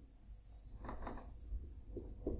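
Felt-tip marker writing on a whiteboard: a quick series of short, squeaky strokes.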